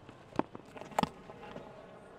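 Faint cricket-ground ambience with a few sharp clicks, the loudest about a second in.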